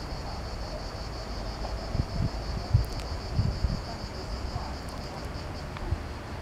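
A steady, high, fast-pulsing insect trill that fades just before the end, over low wind rumble on the microphone and a few dull handling bumps.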